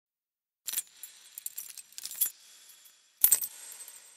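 Bright metallic clinks and chimes: a sharp strike a little under a second in, a flurry of lighter clinks, then louder strikes about two and three seconds in. Each strike leaves a high ringing tone.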